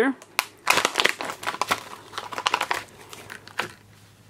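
Thick plastic wrapper of an H&H H Bandage being torn open at its tear notch and crinkled as the folded bandage is worked out. It is a dense run of crackles starting about half a second in and thinning out after about three seconds.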